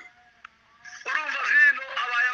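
A man's voice speaking over a telephone-quality online call line: a short pause with one brief faint blip, then the speech resumes about a second in.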